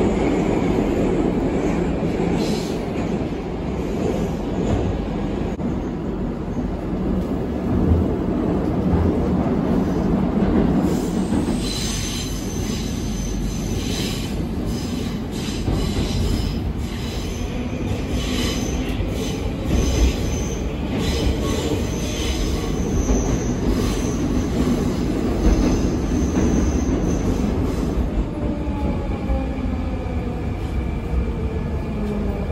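Cabin sound of a Moscow Metro 81-740/741 articulated train running underground: a steady rumble of wheels and running gear. From about twelve seconds in there are repeated clicks and high wheel squeals. Near the end a whine falls in pitch as the train slows for the next station.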